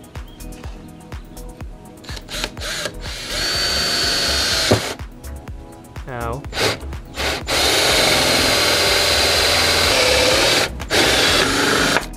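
Cordless drill with a hole saw cutting through a car's metal hood panel, a harsh grinding screech with a high whine, in two long runs, the second longer, then a brief burst near the end.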